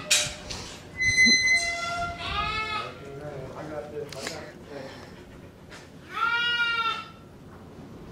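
Angora goats bleating in the pens: a short bleat about two seconds in and a longer, louder one about six seconds in. A thin, steady high-pitched call or squeal comes briefly about a second in.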